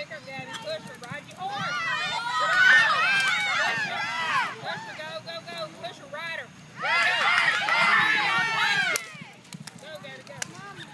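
High-pitched voices yelling and whooping, cheering on a barrel-racing horse and rider. The shouting comes in two loud spells, about two to four seconds in and again about seven to nine seconds in, and dies down near the end.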